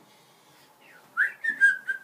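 A boy whistling through pursed lips: starting about a second in, a quick upward glide into a few short steady notes, each a little lower than the last.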